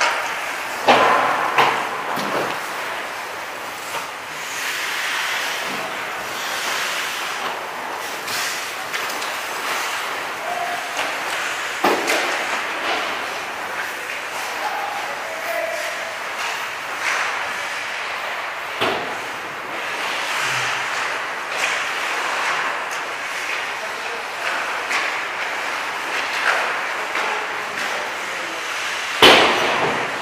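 Ice hockey practice on an indoor rink: skates scraping the ice, with sharp cracks of pucks off sticks and boards every several seconds, the loudest near the end.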